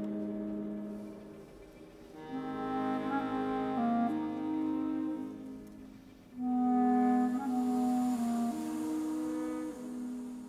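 Chamber ensemble playing a slow instrumental passage with French horn and other winds: a held low note fades out, then two phrases of sustained notes move in small steps, the second entering louder about six and a half seconds in.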